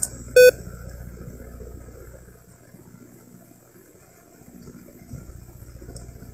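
A single short beep about half a second in, followed by faint low background rumble.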